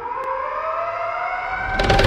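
The opening of an upbeat K-pop track: a siren-like synth tone glides upward in pitch and grows louder. The full beat with heavy drums comes in near the end.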